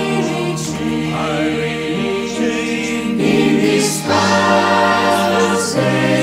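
Mixed-voice gospel choir singing held chords in harmony. A deep low note comes in about four seconds in and the sound grows louder and fuller.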